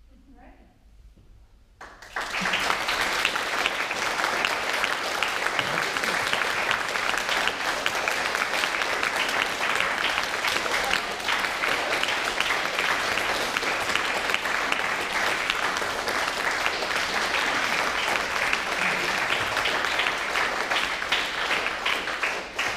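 A group of people applauding, kicking in suddenly about two seconds in and carrying on steadily for some twenty seconds.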